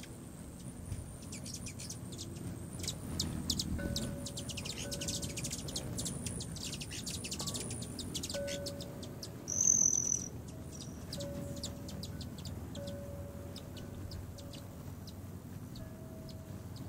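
Hummingbirds at a feeder chittering, a rapid run of high chip notes, with one loud, short, high squeal about ten seconds in.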